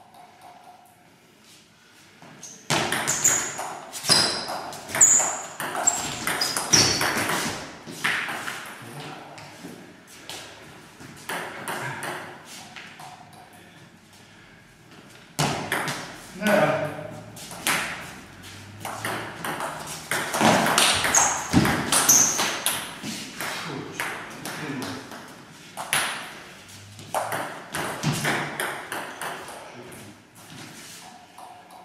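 Shoes squeaking on a sports-hall floor during an indoor ball game, mixed with the thuds of the ball and players' shouts. Busy stretches come a few seconds in and again from about halfway.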